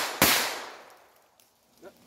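A single shot from a Ruger SR22 .22 LR pistol, fired right after another, its report echoing away over about a second. It is the last round, leaving the gun empty.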